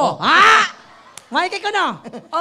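A voice letting out two loud, drawn-out cries, each swooping up and then back down in pitch, with a short gap between them.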